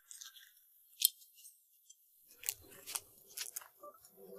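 A small knife cutting through the thick skin of a dragon fruit (pitaya) as it is sliced around the middle. The cuts are faint and crisp: one sharp click about a second in, then a few more short cuts and clicks near the end.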